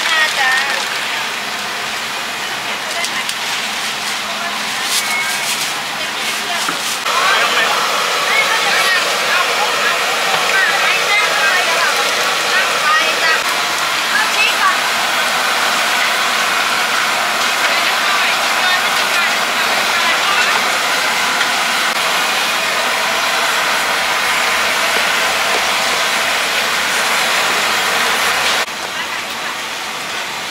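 Chicken pieces deep-frying in a large wok of hot oil: a loud, steady sizzle that starts abruptly about a quarter of the way in and cuts off near the end. Before it there is a quieter stall-side noise.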